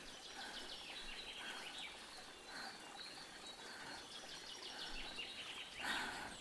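Faint outdoor ambience with birdsong: a songbird's descending trill of quick notes heard twice, over short repeated calls.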